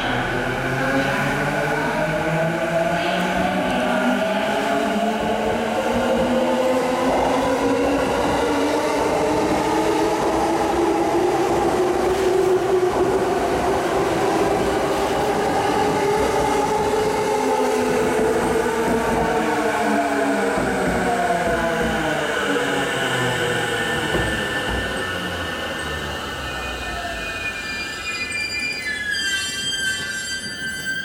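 JR East E233 series electric train pulling away: its inverter-driven traction motors whine in several pitches that climb as the train accelerates, over wheel-on-rail running noise. The whine levels off and sinks as the cars roll past and away, and the sound fades towards the end.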